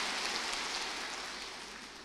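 A soft, even hiss that fades steadily.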